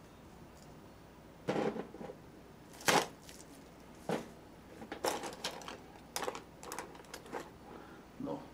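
Paintbrushes and painting tools being rummaged through in search of a fan brush: a string of clicks, knocks and light clatter, the loudest knock about three seconds in and a quicker run of small clicks near the end.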